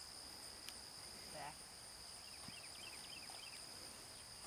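Insects, crickets or similar, singing steadily in a faint, high-pitched continuous drone at two pitches, with a few faint chirps in the second half.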